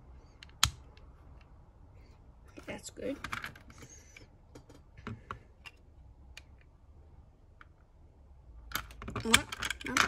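Plastic LEGO bricks clicking and tapping as they are handled and pressed together, with one sharp click about half a second in. Near the end the clicks come thick and fast, a busier clatter of bricks being handled.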